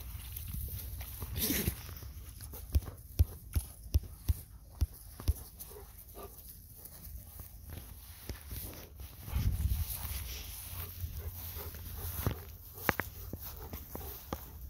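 Golden retriever panting and moving about on grass. A run of about seven sharp clicks comes a few seconds in, and a brief low rush of wind-like noise comes near the middle.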